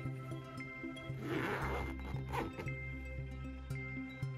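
Background music, and about a second in a rasping zip lasting under a second, then a shorter one: the zipper of a mesh pop-up butterfly habitat being worked.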